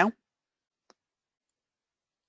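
A single faint click of a computer mouse button about a second in, after the tail of a spoken word; otherwise silence.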